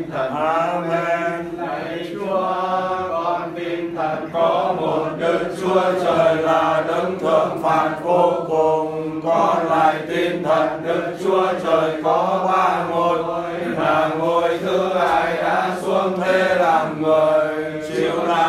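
Catholic prayer chanted in Vietnamese, the words intoned in a continuous sing-song recitation (đọc kinh).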